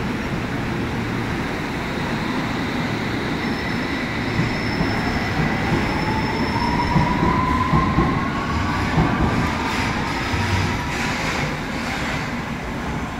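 London Underground S8 stock train pulling out of the platform: a rumble with a traction-motor whine that rises slowly in pitch as it gathers speed. A run of wheel clicks and knocks comes about two-thirds of the way through as the cars pass.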